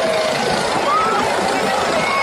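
Helicopter flying low overhead, its rotor and engine noise blended with the shouting of a large crowd.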